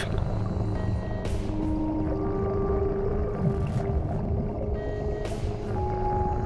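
Ambient background music: a low drone with long held notes at several pitches, and two soft hissing swells, one about a second in and one near the end.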